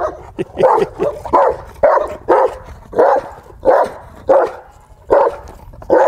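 Caucasian Shepherd Dog barking repeatedly, a steady run of short barks about two a second.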